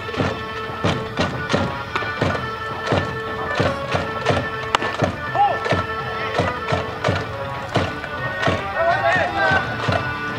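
Japanese baseball fans' cheering section performing a player's cheering song: drum beats about twice a second under a melody of held horn notes, with voices singing along.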